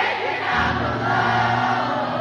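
Concert crowd singing together in unison over a live rock band, with a low bass note coming in about half a second in.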